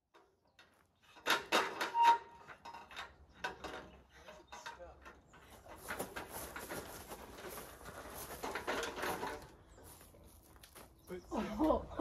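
Aluminium extension ladder clanking and rattling as it is handled, with the loudest metal knocks a little over a second in and lighter clatter after that.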